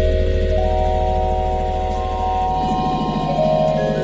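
Electronic ambient music: long held synthesizer tones over a steady low drone, with new, higher tones entering about half a second in and again about a second later.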